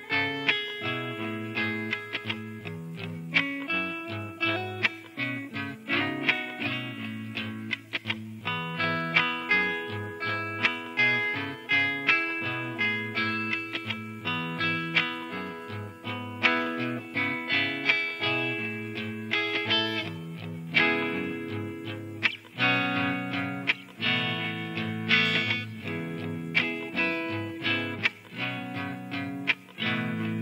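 Layered guitar loop playing back from a DigiTech JamMan Stereo looper pedal: percussive string thumps and body slaps standing in for bass drum, snare and hi-hat, a bass line and a chord groove in E, with guitar notes played live over it.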